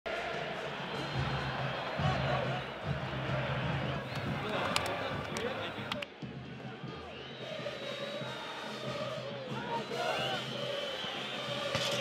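Football stadium crowd: fans singing over repeated low drum beats, then an abrupt cut about halfway through to a thinner crowd sound with voices rising and falling.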